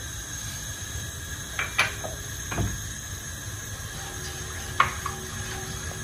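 Low steady kitchen background rumble, broken by a few light clicks and knocks of kitchen utensils as the glass bowl and spatula are handled around a wok of oil with curry powder in it.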